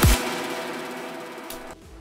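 A big room house drop playing back from the DAW stops after a final kick; the bass cuts out and the synth and reverb tail fades away over about a second and a half. A short click follows near the end.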